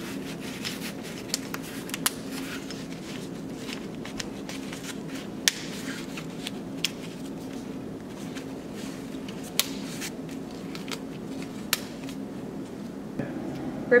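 Fabric seat pad of a Graco FitFold stroller being rubbed and wrapped over the frame tube by hand, with about six sharp clicks spaced a second or more apart as its snap fasteners are pressed shut, over a low steady hum.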